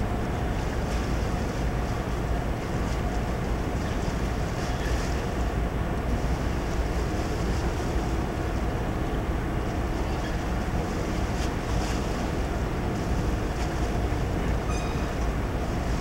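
Steady low rumble of a ship's engines and machinery heard from the deck, with a faint steady hum and wind on the microphone.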